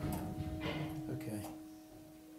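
A church bell ringing after a clapper stroke, its steady tone dying away, with a few fainter knocks on top. The bell is rung up to full circle, so the clapper strikes near the top of each swing.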